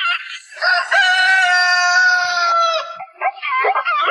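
A rooster crowing: one long held call of about two seconds that falls slightly in pitch at its end. Short, clipped cluck-like calls come before it and repeat in a rhythm after it.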